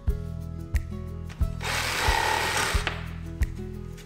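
Background music with a steady beat. About a second and a half in, a power tool runs briefly for about a second.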